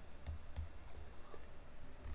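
A few faint clicks from a stylus on a writing tablet, over a low steady hum.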